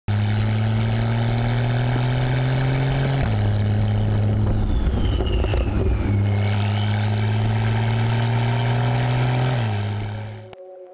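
Porsche 991.2 Carrera S twin-turbo flat-six running through a Fi valvetronic catback exhaust with catless downpipes, under light steady acceleration, its pitch creeping up and then dropping abruptly about three seconds in and again near the end. A rough, noisy burst comes midway, alongside a whistling tone that falls and then sweeps sharply upward.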